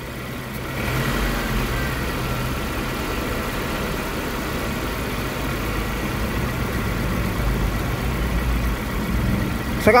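Suzuki four-cylinder engine idling steadily, misfiring and shaking: the mechanic puts the misfire down to a dead or dying ignition coil.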